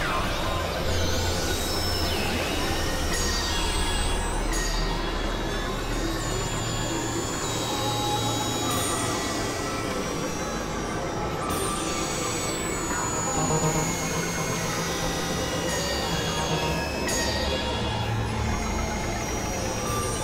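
Dense, layered experimental electronic music and noise: many overlapping sustained tones at different pitches over a noisy wash, with high sweeps that fall in pitch every few seconds.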